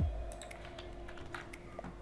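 Computer keyboard keystrokes: a handful of scattered, fairly faint key clicks as code is entered.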